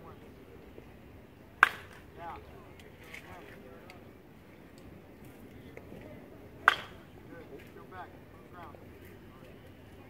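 Baseball bat hitting pitched balls: two sharp cracks about five seconds apart, with faint voices in between.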